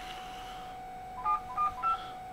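Touch-tone telephone keypad beeps: three short DTMF tones in quick succession in the second half, as a phone number is dialled. A faint steady tone hums underneath.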